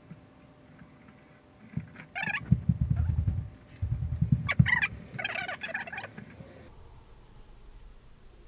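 Soundtrack of a VHS tape playing through a TV's speakers, picked up across the room: uneven rumbling bursts with brief higher flares. It cuts off suddenly near the end as the tape stops and the screen goes to blue.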